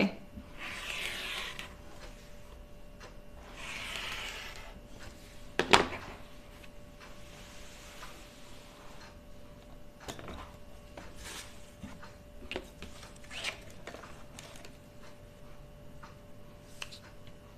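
Rotary cutter and rayon fabric being worked on a cutting mat: two brief scraping rustles in the first few seconds, then a single sharp knock about six seconds in, followed by a few light taps.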